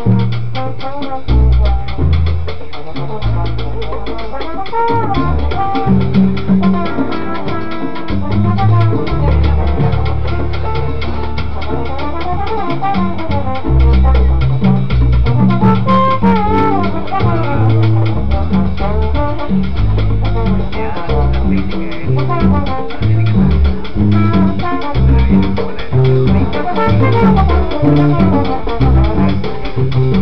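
A live salsa band plays an uptempo tune. The electric bass walks beneath piano and dense, steady Latin percussion, while a trombone plays a winding melody on top.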